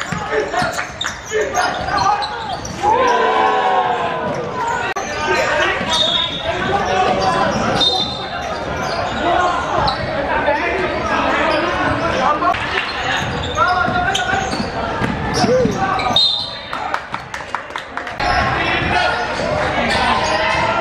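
Basketball game in a large echoing sports hall: a basketball bouncing on the hardwood court, with players and spectators calling out and a few brief high squeaks.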